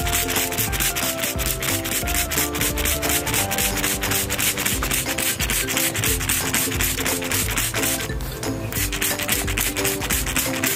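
Hand trigger spray bottle squirting liquid onto leaves in rapid, evenly spaced hissing sprays, several a second, with a brief pause a little after 8 s. Faint background music plays underneath.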